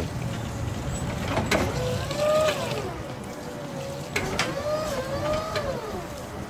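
Yale forklift driving, its motor whine slowly rising and falling in pitch over a low steady hum, with three sharp clicks or knocks.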